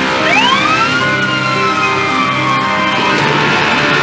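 A siren gives a single wail over background music, rising quickly for about a second and then falling slowly away over the next two seconds.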